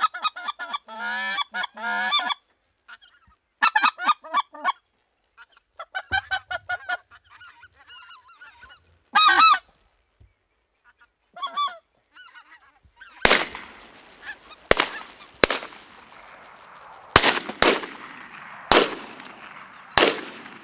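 Geese honking in repeated bursts of calls for about twelve seconds, then a volley of about six shotgun shots in quick succession over the last seven seconds, each ringing out in an echo.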